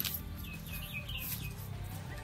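Small birds chirping, short high curved calls in the first second and a half, over a steady low hum.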